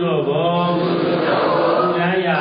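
A man's voice chanting in a sustained, drawn-out sing-song, the pitch held long and gliding slowly up and down.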